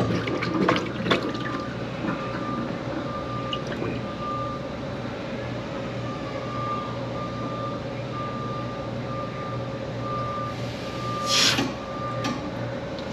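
A steady machine hum, with a high-pitched beep tone that sounds on and off in irregular stretches. About eleven seconds in comes a short, loud rushing burst.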